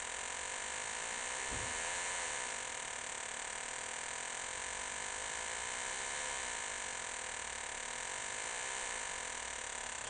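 Homemade metal detector's audio output: a steady buzzing tone whose pitch wavers slightly a couple of times as a ring is moved near the search coil. The response to this ring is weak and hard to hear.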